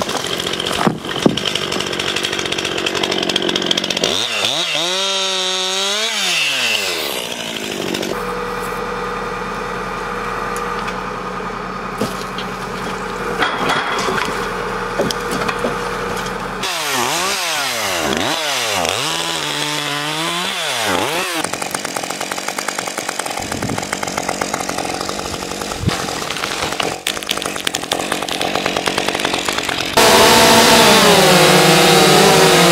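Two-stroke chainsaws of about 50 cc running in a string of short clips. The engine pitch rises and falls as they rev and cut through wood, with a steadier stretch of running in between.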